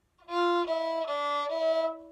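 Violin bowed in four notes, F, E, D, E: the 'two, one, open D, one' motif on the D string, with the F natural taken as a low second finger. The pitch steps down twice, then back up a step, and the last note rings on briefly after the bow stops near the end.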